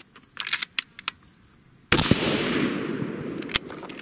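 Single .308 Winchester rifle shot from a Bergara B-14 HMR fitted with a radial muzzle brake, about two seconds in: a sharp crack followed by a rolling echo that fades over about a second and a half. A few light clicks come before it.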